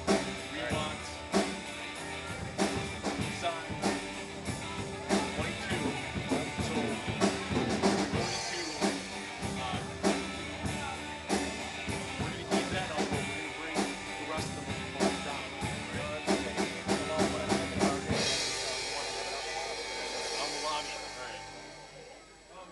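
Live band music with drum kit and guitars playing steadily. About eighteen seconds in, the drums stop and the final chord rings out and fades away.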